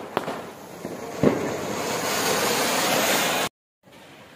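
Ground firework fountain (anar) spraying sparks with a steady hiss that grows louder, with a sharp crack about a second in. The sound cuts off suddenly shortly before the end.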